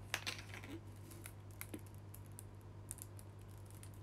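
Faint, scattered light clicks and taps, several close together at first and then a few single ones, over a steady low hum.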